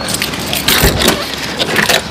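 A car door being opened as someone gets into a small hatchback: a low thud about a second in, with clicks and rustling around it.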